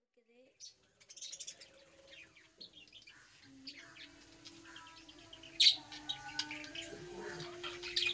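A flock of budgerigars chirping and chattering in many short, high squeaks, with one louder, sharp chirp about five and a half seconds in.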